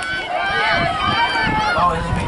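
Several spectators' voices calling and shouting over one another, with a low rumble underneath.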